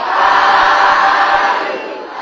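A congregation of many voices chanting together in unison, one phrase swelling up and fading away over about two seconds, with the next phrase beginning just after.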